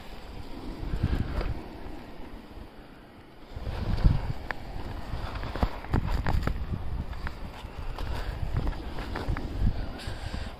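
Skis scraping and chattering over packed, tracked-up groomed snow during a downhill run, with wind rumbling on the phone's microphone. It eases off about three seconds in, then comes back louder with many short scrapes and clicks.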